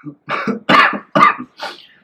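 A man coughing into his fist, a run of about four coughs in quick succession.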